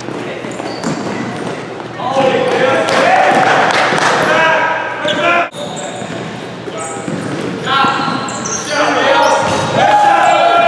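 Live sound of a basketball game in a gym: a ball bouncing on the hardwood court amid players' shouting voices, which rise about two seconds in and again near the end, with a brief sudden dropout midway.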